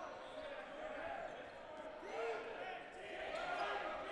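Echoing gymnasium sound during a dodgeball game: faint, distant player voices calling across a hardwood-floored hall, with rubber dodgeballs bouncing on the floor.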